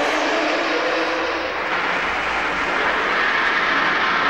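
Beatless passage of an industrial electronic body music track: a steady rushing noise drone with faint held synth tones underneath, train-like in texture.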